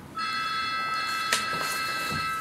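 A high ringing tone of several steady pitches at once, starting just after the pause begins and held for over two seconds, with a short click partway through.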